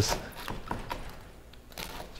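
Knife slicing through a loaf of crusty bread on a plastic cutting board: a few soft cutting sounds in the first second, then quiet.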